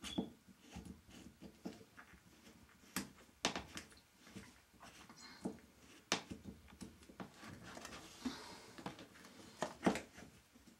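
Scattered light clicks and knocks of sink drain-pipe parts being handled and pushed together by hand, with soft rustling of clothing in between.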